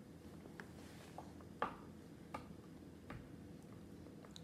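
Quiet room with a low steady hum and about five faint clicks and taps from a baby eating at a plastic high-chair tray. The sharpest click comes a little before the middle.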